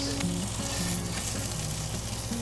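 Fillet steak sizzling steadily in a hot frying pan as its edges are seared, picked up close to the pan.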